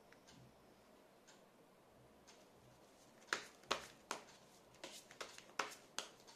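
Tarot cards being handled: a quiet stretch, then about halfway through a run of sharp clicks, several a second.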